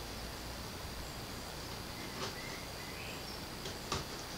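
Quiet room tone with a faint steady high whine, and faint handling noise as fingers press a small wooden hand piece onto the peg of a wooden model's neck, with a light click near the end.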